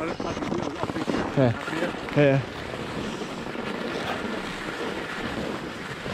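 Skis sliding over packed snow and wind on the microphone while skiing downhill, a steady rushing noise that starts suddenly as the run begins.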